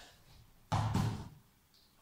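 A single dull knock about three quarters of a second in, as hands take hold of the edges of a BOSU balance trainer's hard plastic platform, set flat side up.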